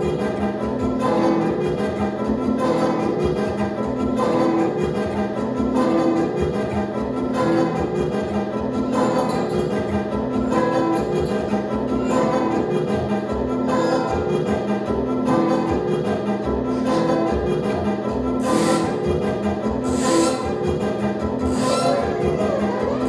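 Live experimental band music from electric guitar, keyboard and electronics: dense sustained tones over a short figure that repeats throughout. Near the end three short bursts of hiss cut in.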